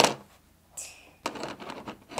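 A sharp click, then a short hiss and light rustling and ticking from hands handling a plastic Play-Doh mold tray and lifting a molded piece of dough out of it.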